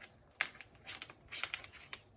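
A Moluccan cockatoo's beak and claws clicking and tapping on hard plastic, four or five light, irregular clicks as he climbs at a clothes dryer's door.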